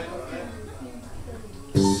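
Live band in a small room: soft, low-level voices and playing, then near the end a singer and the band come in loud together.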